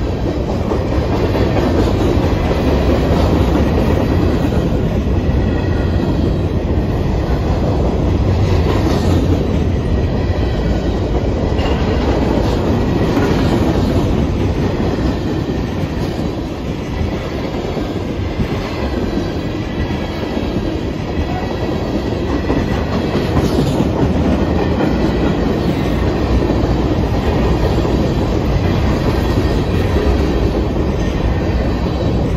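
Freight cars of a passing Norfolk Southern train, boxcars and covered hoppers, rolling by close at hand: a loud, steady noise of steel wheels on rail that keeps up throughout.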